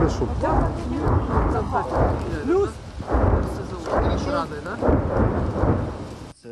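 Distant BM-21 Grad multiple rocket launcher fire: a rolling series of low rumbling booms about a second apart, like continuous thunder.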